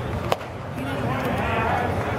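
A single sharp pop about a third of a second in as a pitched baseball arrives at home plate, over steady ballpark crowd noise. A voice calls out in the second half.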